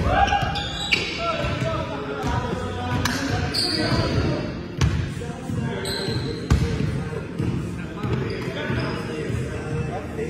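Basketball bouncing on a hardwood gym floor, with sharp thuds every second or two, amid players' indistinct voices, all echoing in a large gymnasium.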